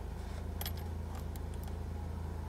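A few short, light metallic clinks, like keys or coins being handled, about half a second to a second and a half in, over the steady low hum of the car's idling engine.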